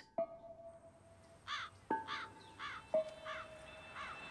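Crows cawing four times in quick succession, over a few soft, sustained notes of background music.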